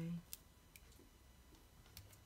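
A few faint clicks and taps of fingertips and nails on a paper planner page as a sticker is pressed down.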